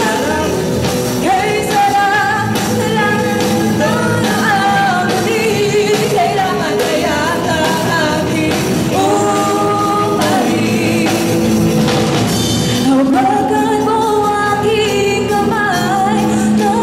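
Live rock band playing a song: a female vocalist sings a melody over electric guitars and drums.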